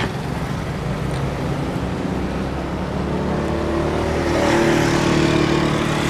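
Road traffic running steadily, with one motor vehicle passing close: its engine and tyre noise grow louder about four seconds in and ease off near the end.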